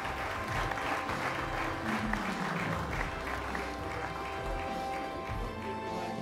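Audience applauding, with background music of held notes coming in about a second in.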